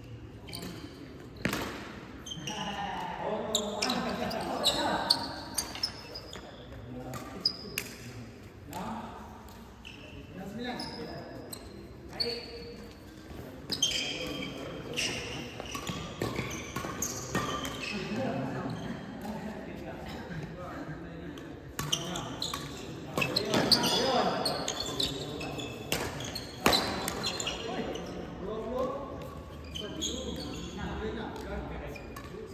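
Badminton rackets striking the shuttlecock with sharp cracks at irregular intervals during a rally, mixed with short squeaks of shoes on the court floor, in the echo of a large hall. Voices talk in the background.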